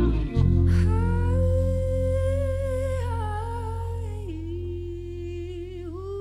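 A live band's groove breaks off just after the start, leaving a sustained low chord that slowly fades under a singer's held, slightly wavering hummed line, which steps down in pitch about four seconds in.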